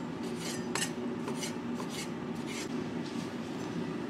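A chef's knife chopping small tomatoes on a wooden cutting board: a run of irregular short cutting strokes through the tomato onto the board, over a steady low hum.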